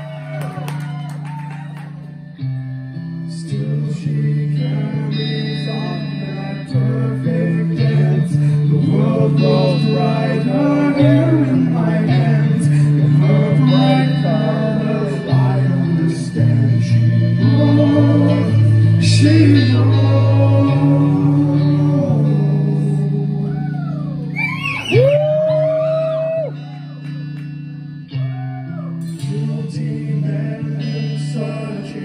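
Live progressive metal band playing a song: electric guitar over sustained low bass notes, with a singer holding long notes. The music swells in loudness through the middle and eases off toward the end.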